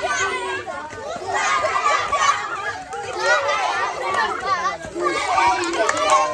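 A crowd of young children's voices, many high voices talking and calling out over one another at once.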